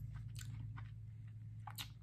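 A few faint, crisp crunches of a raw Caribbean Red habanero pepper being chewed: a very crunchy, thin-walled pod.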